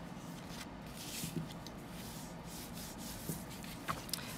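Bone folder rubbing along the folds of cardstock to press the creases flat: quiet rubbing and scraping of paper, with a few brief scrapes.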